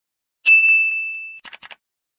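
A single bright, ringing ding sound effect that fades for about a second and then cuts off, followed by a few quick faint ticks.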